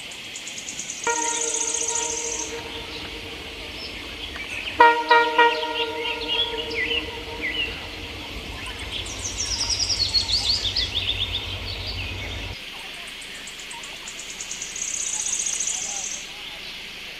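Train horn sounding twice, each blast about two seconds long, the second over the low rumble of a passing train that cuts off suddenly about three-quarters of the way through. Birds and insects chirp high throughout.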